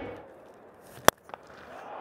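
A single sharp crack of a cricket bat striking the ball about a second in, a cleanly timed full shot, followed by a fainter click.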